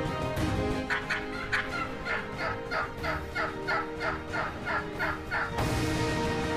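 Wild turkey calling: an evenly spaced run of about fourteen short notes, roughly three a second, that stops abruptly near the end.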